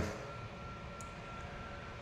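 Quiet room tone: a steady low hum and hiss with a faint steady high whine, and one faint tick about a second in.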